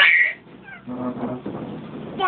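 A baby's high-pitched squeal at the very start, then softer pitched vocal sounds about a second in.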